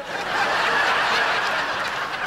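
A large audience laughing together, swelling in at once and easing off slightly near the end.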